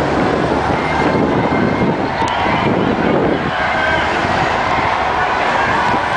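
Cars passing close by on a busy multi-lane street, a steady rush of tyre and engine noise, with the voices of a crowd behind.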